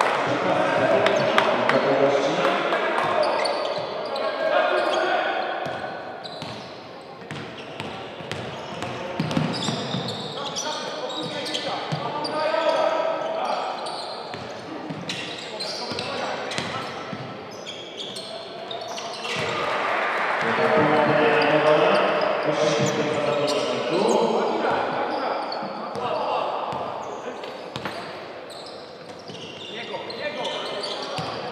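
Live basketball court sound in a reverberant gym hall: the ball bouncing on the hardwood floor in a run of sharp knocks, mixed with voices from players and spectators.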